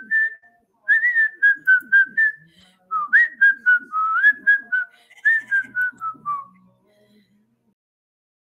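A person whistling a tune: a single melody of short notes with a few upward slides, ending about seven seconds in.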